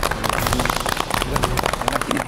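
A small group of people applauding, a dense patter of hand claps, with voices underneath.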